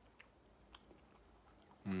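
Faint chewing of a chewy gelatin wine gum with the mouth closed: a few soft, sticky mouth clicks. Near the end, a hummed "mhm" of approval.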